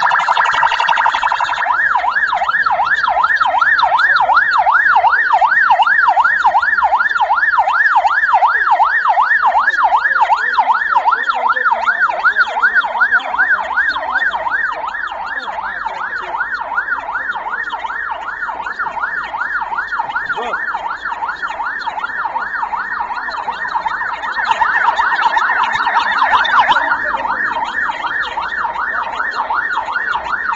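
SAMU ambulance siren switching on suddenly and sounding a fast yelp, its pitch sweeping up and down about four times a second.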